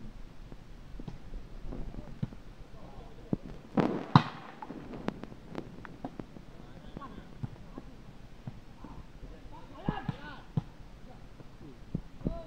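Sharp slaps of a volleyball being struck by hand during a rally, the loudest about four seconds in, among the players' indistinct shouts and calls.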